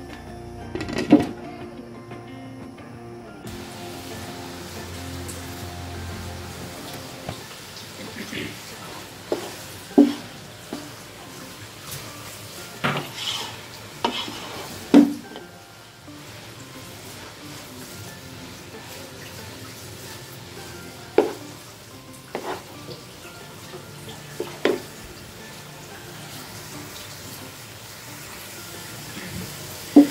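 A wooden spoon stirring grated carrots in a metal pot, knocking sharply against the pot now and then, over a steady low sizzle as the carrots cook down in sugar and their water boils off.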